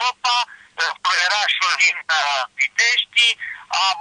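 Speech only: a man talking in Romanian over a telephone line.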